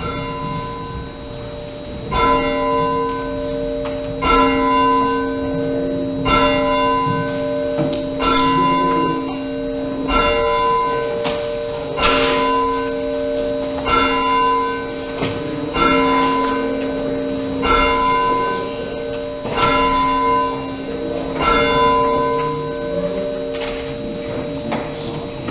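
A single church bell tolling slowly, one stroke about every two seconds, each stroke ringing on into the next.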